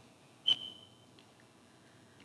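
A sharp click about half a second in, followed at once by a short, high, steady single-pitched tone, like a beep, that stops after well under a second.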